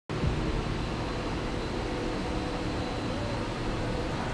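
2006 Chevy Silverado pickup engine idling: a steady low hum.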